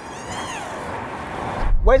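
Tesla Model S Plaid's electric motors whining at a hard launch on a wet, slippy surface. The pitch rises and then dips in the first second as the wheels spin and the power is cut back, over steady tyre and road noise.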